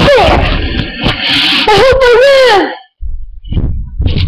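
A high voice making loud, long wavering cries that slide up and down in pitch, twice, with rough noise between them; after a brief drop-out near the three-second mark, low bumps and rumble as the webcam is handled.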